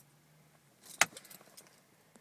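Car keys in the ignition jingling: one sharp click about a second in, then a few light rattles, in an otherwise near-silent cabin.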